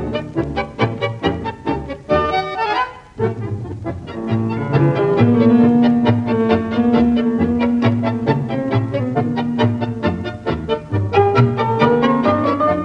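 Instrumental tango orchestra music with strings: choppy, accented chords, a quick rising run about two seconds in, then long held melodic notes from about four seconds, with the choppy accompaniment returning near the end.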